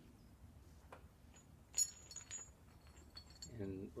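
Metal rigging plate on a rope bridge clinking once with a short high ring, then a fainter clink, as it is handled against other hardware.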